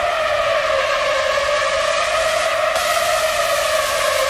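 Electronic dance music breakdown in a DJ set: a sustained synth chord held over a hiss of noise, with the bass and the beat dropped out.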